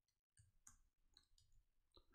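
Near silence with a few faint, scattered computer keyboard key clicks as text is typed.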